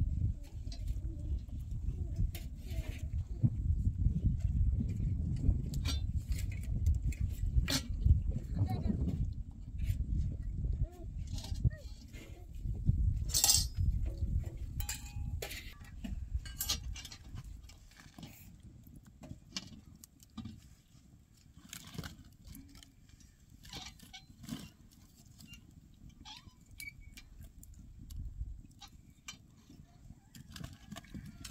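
Clinks and knocks of metal utensils and firewood against an iron saj griddle as flatbread is baked and the wood fire under it is stoked. A low rumble runs under the first half and then eases off.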